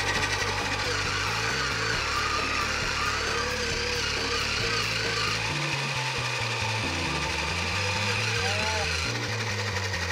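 Small electric motors of toy pottery wheels buzzing steadily as they spin, under background music.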